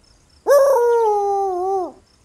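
Cartoon dog Loula giving one long, mournful howl that starts about half a second in, holds nearly level and drops in pitch as it ends.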